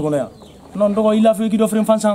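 A man speaking in Malinke, in two phrases with a short pause between them.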